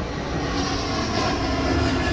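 An airplane passing by: a steady engine noise with no rise or break.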